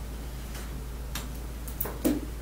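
Sheets of printed paper being handled and leafed through: a few short, crisp paper snaps and rustles, irregularly spaced, over a steady low hum.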